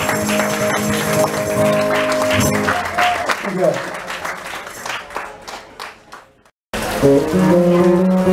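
A live acoustic song on cello and acoustic guitar holds its final notes. A small audience then claps, and the clapping fades away. The sound cuts out suddenly about six and a half seconds in, and music with held cello and guitar notes starts again near the end.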